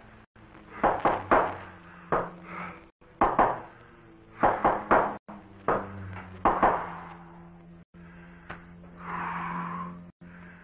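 A code tapped out as sharp, ringing metallic pings in quick groups of one, two and three strikes, over a steady low hum. Near the end comes a one-second hissing tone.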